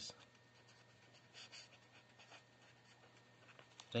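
Marker pen writing a word on paper: faint, short pen strokes in irregular succession.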